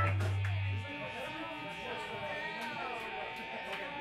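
A loud, steady low note from a bass guitar amplifier fades out and stops about a second in, leaving a room full of voices chattering and a faint steady hum.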